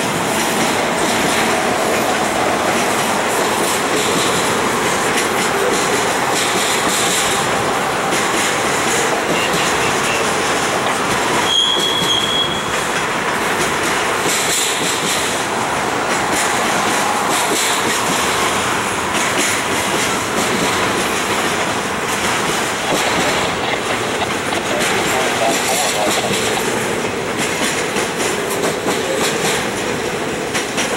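Double-stack intermodal freight train's loaded well cars rolling past, with a steady rumble and clatter of steel wheels on rail. About twelve seconds in there is a brief high metallic squeal from the wheels.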